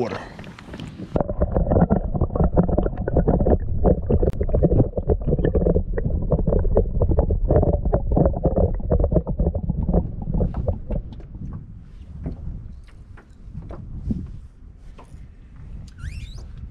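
Water sloshing and knocking heard through a waterproof action camera held underwater while a bass is released: a dense, muffled rumble with many dull knocks and no high tones. It is loudest for most of the first ten seconds, then thins out.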